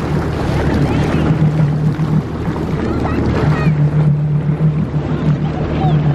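Personal watercraft (WaveRunner) engine running at low speed, a steady hum that dips briefly a little over two seconds in and then picks up again, with water splashing and wind on the microphone.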